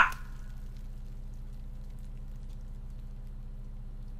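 Steady low electrical hum, room tone with nothing else in it.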